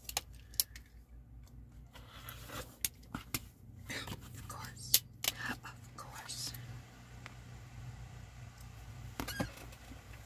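Clicks and light knocks as a clear acrylic ruler and scissors are handled on a cutting mat, with fabric rustling and a faint whispered mutter. The sharpest click comes about five seconds in.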